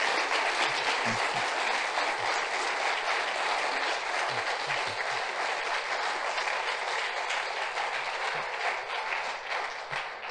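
Audience applauding in a lecture hall: dense, steady clapping that slowly eases off toward the end.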